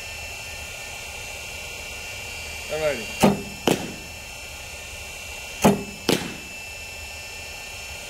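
A pitching machine shooting baseballs to a catcher twice, about two and a half seconds apart. Each pitch is a pair of sharp knocks about half a second apart: the machine firing the ball, then the ball popping into the catcher's mitt. A steady high whine runs underneath.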